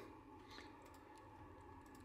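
Near silence: faint room tone with a few faint clicks of a computer mouse.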